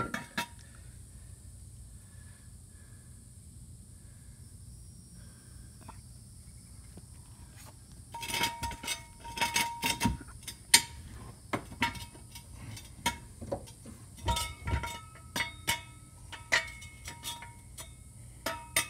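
Steel jack stand being handled and shifted on asphalt. After a quiet stretch, irregular metallic clinks and knocks with brief ringing start about eight seconds in and carry on to the end.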